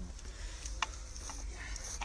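A few faint clicks and taps from hands working at the wooden polybolos, over a low steady rumble.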